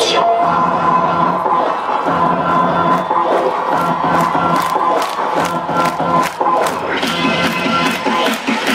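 Live electronic dance music over a large stage sound system, heard from far back in a cheering crowd. The top end thins at the start, a steady beat of about four hits a second builds through the middle, and the full mix comes back near the end.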